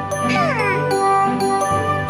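Light, tinkly children's background music with sustained notes, and a quick falling glide in pitch about half a second in.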